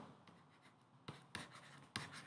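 Faint stylus strokes on a tablet as handwriting is added, with a few light, sharp taps in the second half; otherwise near silence.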